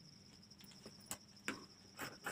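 Scissors snipping through cloth: two quiet, short snips about a second and a second and a half in, over a faint steady high-pitched trill.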